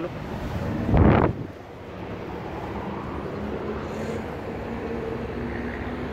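A brief loud rustle and bump about a second in as someone climbs out of a car with the phone, then a steady low hum with wind on the microphone.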